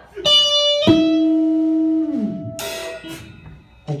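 Electric guitar played in a short flourish: a high note, then a lower note held for about a second that slides down in pitch, followed by a brief crash with a cymbal.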